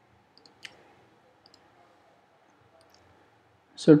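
A few faint, sharp computer clicks over near silence. The clearest comes under a second in, with fainter ones around it and at about a second and a half. A spoken word starts just before the end.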